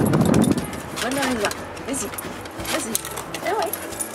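A woman's high, sing-song voice coaxing a small dog, in several short rising and falling calls. A brief clatter comes right at the start.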